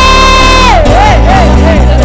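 A woman's voice through a microphone holding one long, high cry, which breaks into a wavering warble about three-quarters of a second in, over loud worship music with a steady bass line.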